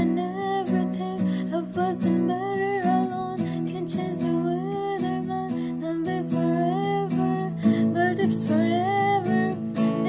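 Acoustic guitar strummed in a steady rhythm, with a woman singing a slow melody over it.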